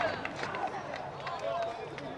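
Scattered calls and shouts of voices across an outdoor football pitch, with a few faint knocks.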